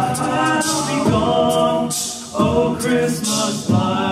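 All-male a cappella group singing sustained chords without words, with a few short hissing percussive hits over them.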